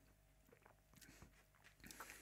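Near silence, with a few faint mouth sounds while a sip of cocktail is tasted and swallowed, a little stronger near the end.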